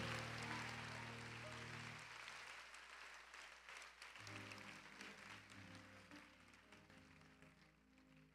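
A congregation's applause dying away under soft, sustained keyboard chords. The clapping fades out over the first few seconds, and a new chord comes in about four seconds in.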